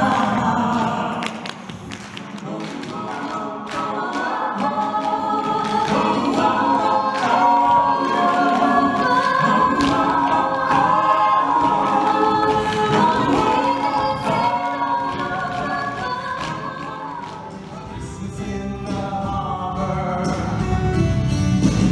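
An ensemble of voices singing together, choir-style, in harmony. The singing drops quieter about two seconds in and again near the end.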